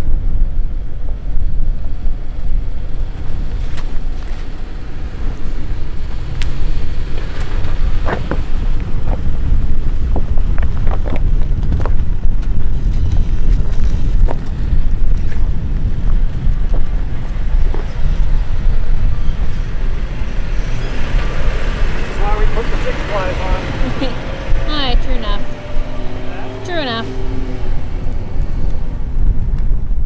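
Wind buffeting the microphone in a loud, gusting rumble, with a few sharp knocks in the middle stretch and voices near the end.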